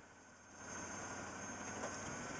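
A first-generation Ford Explorer's engine idling faintly and steadily, with no gas given.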